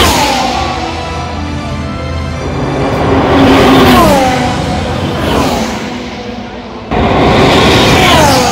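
Formula One cars' turbocharged V6 engines going past at racing speed, each engine note sliding down in pitch as the car passes: at the start, around the middle, and again near the end.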